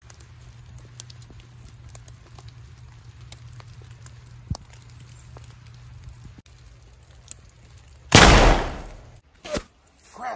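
A single loud bolt-action rifle shot about eight seconds in, fading over about a second, followed by a short sharp crack.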